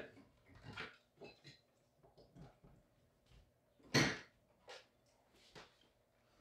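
Light plastic clicks and one sharp knock about four seconds in, as metal beaters are handled and fitted into an electric hand mixer.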